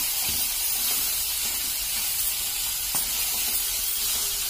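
Cauliflower florets frying in oil in a pan with a steady sizzle, a wooden spatula stirring through them with a few faint ticks against the pan.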